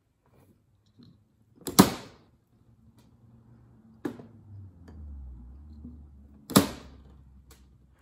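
Pliers snipping through wooden candle wicks: two sharp snaps about five seconds apart, with a fainter click between them and soft handling noise.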